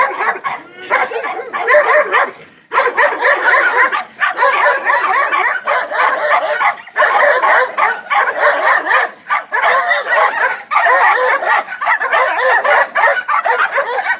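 Dogs yipping and barking excitedly in a dense run of high calls, coming in bursts about a second long with short breaks.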